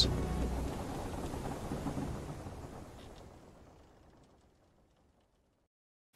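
A noisy rumble that fades away steadily over about four seconds, followed by complete silence.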